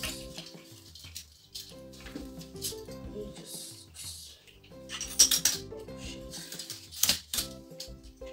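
Background music, with sharp clicks and rattles of a ring light being fitted onto its tripod stand. The clicks are loudest about five seconds in and again near seven seconds.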